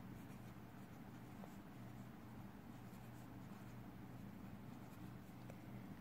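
Faint scratching of a felt-tip marker writing letters and numbers on paper, over a low steady hum.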